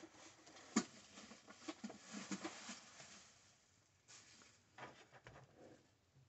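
Faint rustling and handling noises of objects being moved while a glass coffee carafe is fetched from below the table, with one sharp click about a second in.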